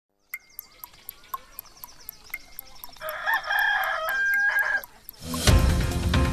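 Clock ticking about four times a second, with a rooster crowing over it from about three seconds in; an intro music theme comes in loudly near the end.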